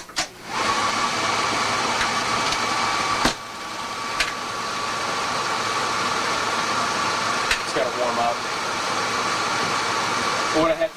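A photocopier clunks shut, then starts up and runs with a steady mechanical whir and a high whine, with a sharp click about three seconds in. It is running to draw up freshly added toner and saturate the machine so that it prints dark black.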